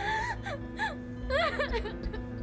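A young woman wailing and sobbing in distress: about three anguished cries that rise and fall in pitch, with soft background music beneath.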